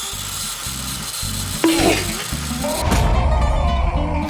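Water splashing and churning as a Lego motor spins the saw blades on the front of a toy boat, over background music with a steady bass line that grows fuller in the last second.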